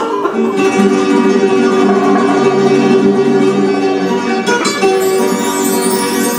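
Flamenco played on Spanish guitars: a steady stream of plucked notes and chords, with no singing.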